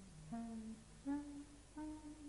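A clarinet playing softly alone: a slow phrase of three short held notes, each a little higher than the one before.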